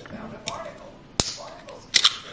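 Small aluminium can of Perrier sparkling water handled on the kitchen counter: a couple of sharp clicks, then the ring-pull snapping open near the end.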